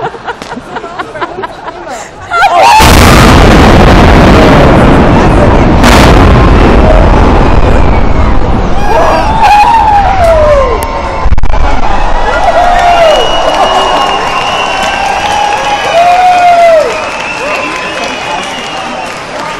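Demolition blasting of a 116 m concrete high-rise built in 1972: about two and a half seconds in, a sudden loud explosion gives way to several seconds of roaring rumble as the tower comes down, with a sharp crack about six seconds in. The rumble then fades while onlookers whoop and cheer.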